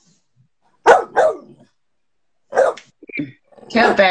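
A dog barking: two short barks close together about a second in, and a weaker one a little after the middle. Laughter follows near the end.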